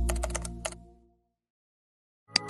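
Computer keyboard typing sound effect: a quick run of about six keystrokes lasting under a second, over the fading low tail of music.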